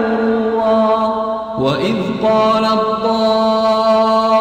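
A man reciting the Quran in a slow, melodic chanted style, holding long drawn-out notes. About one and a half seconds in, his voice breaks into a short ornamented run of pitch turns, then settles into another long held note.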